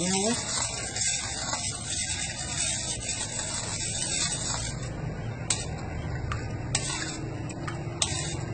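A plastic ladle stirring pig's blood and water round a metal bowl, a steady wet swishing and scraping that blends the two. A few sharp clicks come in the second half.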